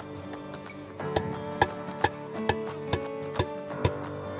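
A plastic sap spile being tapped into a drilled hole in a tree trunk with a rod: seven sharp knocks, about two a second, starting about a second in, over background music.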